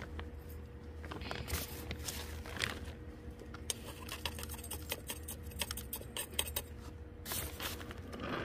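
Metal spoon scooping coarse granular potting mix and tipping it into a small pot around a succulent: a patter of small clicks as the grains fall, with scrapes of the spoon, thickest in the second half.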